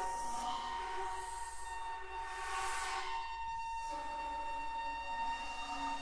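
Flute ensemble of piccolos, flutes, alto and bass flutes holding long sustained notes, one high pitch steady throughout, with a swell of breathy air noise about halfway through.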